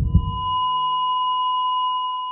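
Sound effect at the end of a music track: two low heartbeat-like thumps, then one long, steady high electronic beep that holds and begins to fade.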